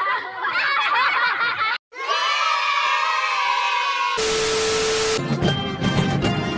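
A quick run of edited transition sounds: a burst of many voices, a brief cut to silence, a held pitched tone that falls slightly, then about a second of hiss with a steady beep. About five and a half seconds in, a marching band starts playing, brass over percussion.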